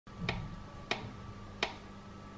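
Electric sandwich toaster cooking with its lid closed: three sharp clicks about two-thirds of a second apart over a faint steady hum.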